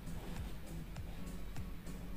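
Quiet background music.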